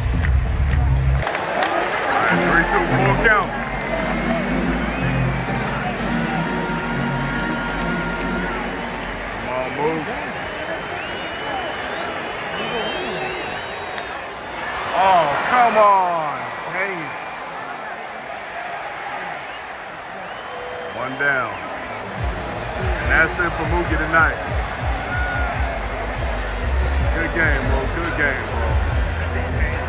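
Stadium music over the ballpark PA with the crowd noise of a full baseball stadium, including nearby voices; the crowd swells briefly around the middle.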